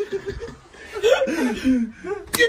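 Men chuckling and laughing, fading briefly about half a second in, then rising again with drawn-out, falling voice sounds in the second half.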